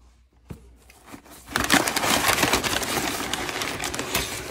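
A cardboard shipping box being opened by hand. There is a faint click about half a second in. From about a second and a half, loud, continuous rustling and crinkling of packing paper and cardboard follows as a hand digs into the box.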